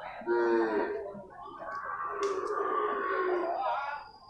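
Young water buffalo calling: a short call about half a second in, then one long call of over two seconds that sinks slightly in pitch near its end.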